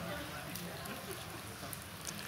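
Quiet room with faint plastic crinkling from prefilled communion cups having their peel-off seals pulled open.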